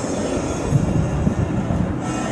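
Kyotei racing boat's two-stroke outboard motor running at speed on the water, a steady low drone.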